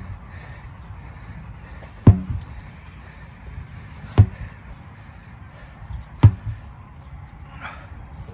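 Sledgehammer striking a large rubber tractor tire: three heavy thuds about two seconds apart.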